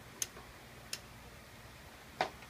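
Two faint, sharp clicks about three quarters of a second apart, made by a cat at a cardboard box.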